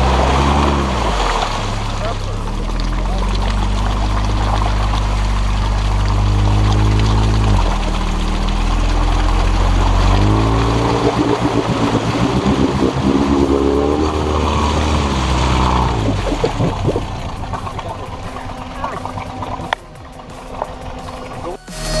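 Engine of a swamp vehicle on large low-pressure tyres running and revving, its pitch rising and falling, while the tyres churn and splash through marsh water. The engine drops away and quietens near the end.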